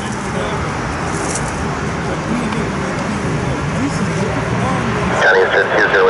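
Steady low rumble of distant jet airliner engines, which about five seconds in gives way abruptly to a louder, wavering whine from the engines of a Boeing 787 on final approach.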